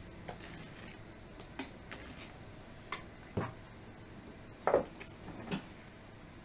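Irregular clicks and knocks of a wire whisk against a plastic mixing bowl while batter is stirred, the loudest knock about three-quarters of the way through.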